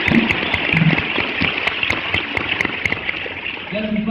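Audience applauding after a band member is introduced: a dense patter of many hands clapping, easing off slightly near the end.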